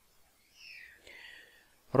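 A soft intake of breath by the narrator in the pause between sentences, a faint hiss in two short parts starting about half a second in.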